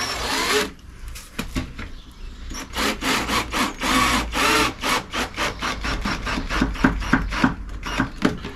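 Cordless drill driving a wood screw into film-faced plywood in short, uneven bursts: one at the start, then a quick run of them from about two and a half seconds in.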